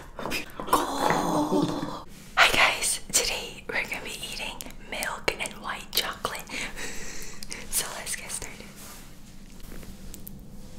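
Close-miked fingernails tapping on the hard chocolate shells of coated marshmallows and treats, with a run of sharp clicks and crackles, the loudest about two and a half seconds in.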